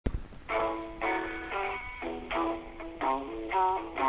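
A man singing a radio promo jingle, a melody of held notes that change pitch about every half second, with vibrato on the notes near the end. A click sounds right at the start.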